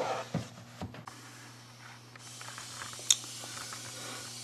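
A few light knocks of a plastic snake tub being slid back into its rack, then, from about two seconds in, a steady hiss from an agitated snake, with one sharp click just after three seconds.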